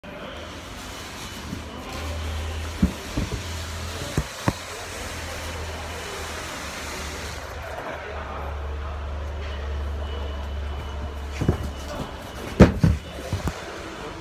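Loading-dock work noise heard from inside an empty truck trailer: a low steady hum that comes and goes, with scattered knocks and bangs, the loudest a quick cluster near the end.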